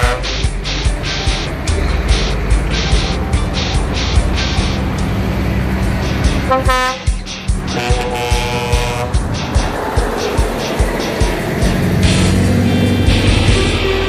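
Trucks driving past in a convoy. Their air horns toot several times, at the start, about halfway and once more just after. Their engines run under loud music with a steady beat.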